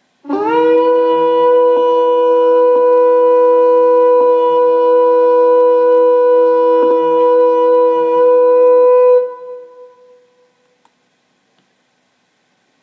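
A shofar blown in one long, steady note that scoops up into pitch at the start, holds, and dies away about nine seconds in.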